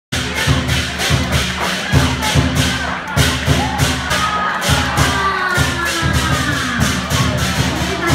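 Lion dance percussion: a drum beating under rapid cymbal clashes, about four a second, with a crowd's voices and cheers mixed in.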